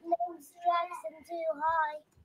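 A young child's high voice in a drawn-out sing-song, four short held phrases.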